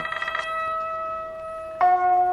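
Quiet lo-fi background music: a held chord dies away to one sustained note, and a new chord comes in near the end.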